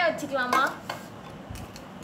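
A few light, separate metallic clicks from Beyblade spinning tops being handled against an aluminium kadai used as the battle arena.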